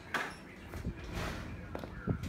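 A sharp knock just after the start and a few softer knocks near the end, over a low rumble.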